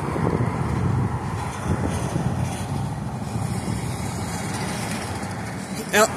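Street traffic: a steady rumble of vehicle engines and tyres, the nearest vehicle a pickup truck towing an enclosed cargo trailer.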